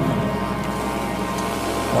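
Chamber ensemble holding a dense, sustained chord: many steady tones layered from low to high, unchanging through the moment.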